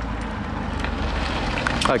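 Renault Clio V6's mid-mounted 3.0-litre V6 running at low revs as the car creeps past at walking pace, a steady low hum that grows gradually louder as it nears.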